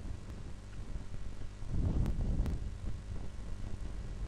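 Faint low rumble of background noise, swelling slightly about halfway through, with a few soft clicks.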